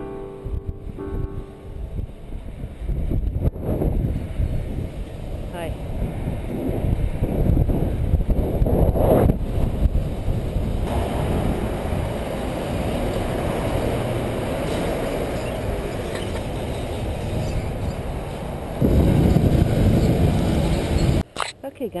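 Wind buffeting the microphone of a camera on a moving bicycle, mixed with the rumble of road traffic alongside. Piano music ends about a second in.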